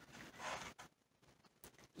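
Faint handling sounds as a chukar egg is lifted from a paper-pulp egg flat: a soft rustle about half a second in, then a few light clicks.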